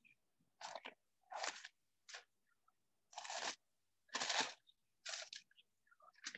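Pages of a book being turned and handled: about six short rustling, crunching bursts, each cut off sharply into dead silence as video-call audio does.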